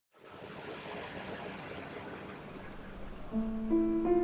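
Opening film score: a soft, even noise fades in, then piano notes enter about three seconds in, held and overlapping.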